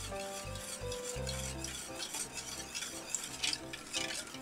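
Wire whisk stirring a runny chocolate custard in a stainless steel pot: an uneven run of swishing strokes with the wires scraping the metal.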